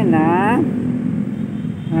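Domestic cat meowing: one half-second call that dips in pitch and rises again at the start, and another call beginning right at the end. A steady low rumble runs underneath.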